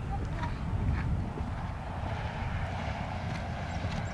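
Wind rumbling on the microphone: a steady, low, uneven rumble.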